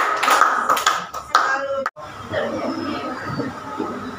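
A class of students clapping for about a second and a half after a presentation, then a sudden cut to quieter classroom voices.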